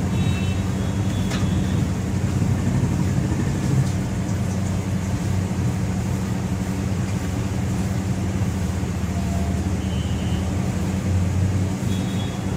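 Steady low mechanical hum and rumble of background noise, with a couple of faint, brief high tones near the start and again about ten seconds in.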